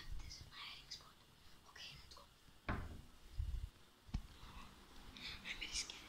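Faint whispering, with two dull knocks around the middle and a sharp click about four seconds in.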